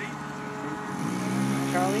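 Radio-controlled model airplane engine running at a steady pitch, getting louder about a second in.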